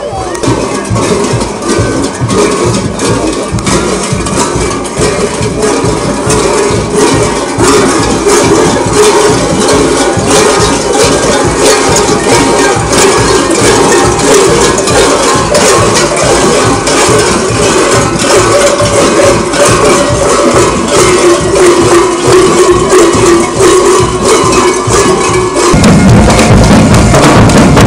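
Parade folk music: dense, rattling percussion in a quick steady beat under a sustained melody, growing louder over the first several seconds.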